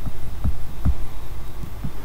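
Low, irregular thumps, about five in two seconds, over a steady low hum.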